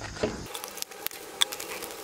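Scattered light clicks and crinkles of a cardboard product packaging card being handled and turned over in the hand, a few irregular ticks a second.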